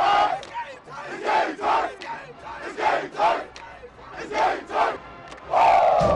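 A football team shouting a chant in unison, in short pairs of shouts about every second and a half, ending in a longer shout that falls in pitch near the end.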